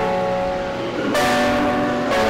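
Organ playing sustained chords, the held notes changing to a new chord about a second in.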